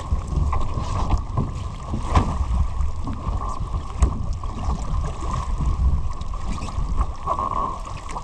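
Small sailing dinghy under way: wind buffeting the microphone in a steady low rumble, with water splashing and gurgling along the hull and a couple of sharp knocks.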